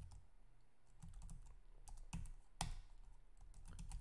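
Faint keystrokes on a computer keyboard, clicking in short irregular runs as a few words are typed.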